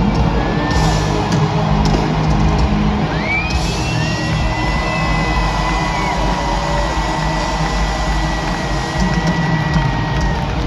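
Live rock band playing an instrumental section loudly through an arena's PA, heard from among the audience with the hall's echo, a long high note held from about a third of the way in.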